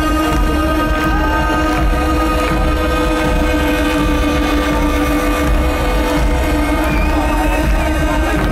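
Electronic intro music played loud over a festival PA: sustained synth drone tones held steady over deep bass.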